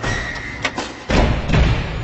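Intro-sting sound effects for an animated logo reveal: a sharp hit a little over half a second in, then two heavy, deep impacts about a second and a second and a half in, ringing away slowly.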